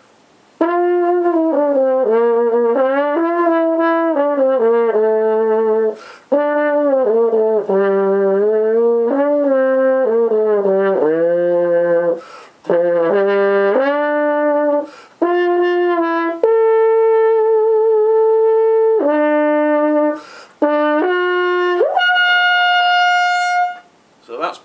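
Trombone played through a Softone fabric practice mute hung over the bell as a bucket mute. It plays a melody in phrases with short breaks between them and ends on a long held high note.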